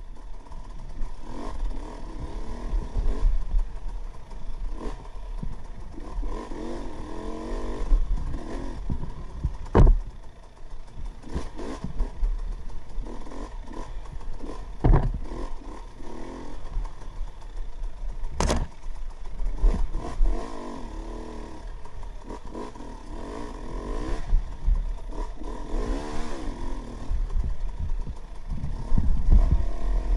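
KTM 300 XC-W two-stroke single-cylinder dirt bike engine revving up and down as the bike is ridden along a rough trail, with a few sharp knocks, the sharpest about eighteen seconds in.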